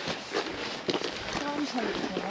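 Footsteps on a wet gravel track at a walking pace. A faint voice or call comes in under them in the second half.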